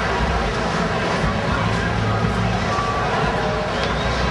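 Busy street at night: a steady mix of traffic rumble and indistinct voices from people on the pavement.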